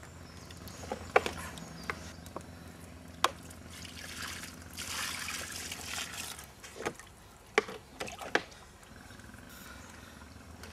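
Water poured from a plastic tub over a carp in an unhooking cradle, splashing for about two seconds midway. A few sharp knocks of handling come before and after it.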